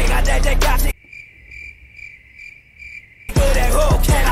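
Music with a beat cuts out about a second in and gives way to a cricket-chirping sound effect, a thin high chirp pulsing about two to three times a second. This is the usual comic cue for an awkward silence. The music comes back near the end.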